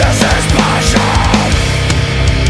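Metalcore/hardcore song recording: heavily distorted guitars, bass and fast drums playing loud and dense.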